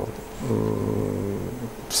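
A man's drawn-out hesitation sound, a long "uhh" held on one low, slightly falling pitch for over a second, between phrases of his speech.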